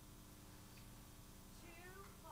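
Near silence: room tone with a low steady hum, and a faint, short gliding pitched sound near the end.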